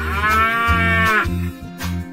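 A cattle moo sound effect voicing cartoon buffaloes: one moo of just over a second, rising then falling in pitch. Backing music runs underneath.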